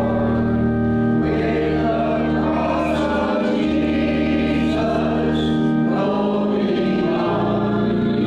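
Church organ playing a hymn in sustained chords that change every second or two, with voices singing along.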